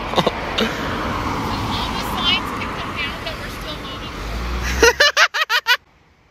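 Road traffic noise from passing cars, with a low rumble as a vehicle goes by close about four seconds in. Near the end comes a quick run of laughter.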